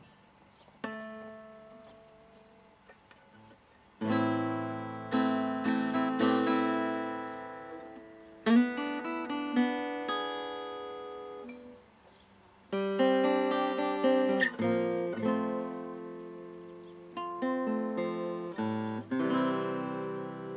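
Solo acoustic guitar playing chords with no singing. One chord rings out about a second in and fades, then fuller strummed chords start about four seconds in, die away briefly near the middle, and start again.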